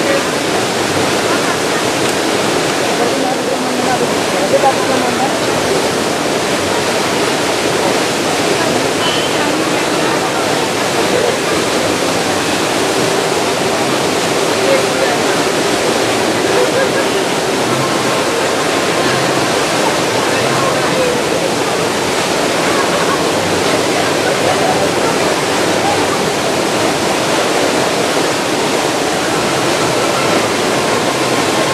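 Steady rush of water pouring over a concrete weir on a stream, with faint voices of people talking in the background.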